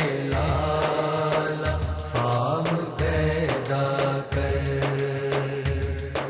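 Male voices singing an Urdu devotional naat, drawing out long held notes that bend in pitch, with a low beat about once a second underneath.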